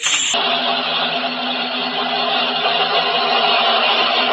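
A loud, steady droning noise: an even hiss with several fixed low tones beneath it. It cuts in abruptly at the start, replacing the music.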